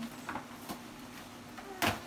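Brown paper gift bag handled and opened, with faint rustles and one short, sharp crinkle of paper near the end.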